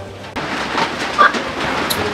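A glass-panelled door being slid open, rattling and scraping on its track, with a brief squeak around the middle and a sharp click near the end.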